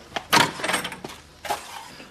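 A door being opened and shut: a latch click, the door swinging open, and a short knock as it closes about a second and a half in.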